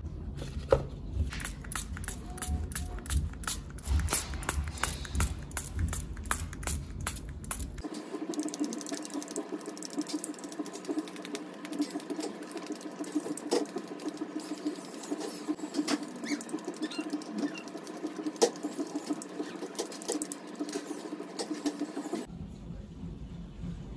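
Many small clicks and taps over a deep rumble. About eight seconds in, the sound changes: the rumble drops away and a steady hum begins, with the clicking going on over it.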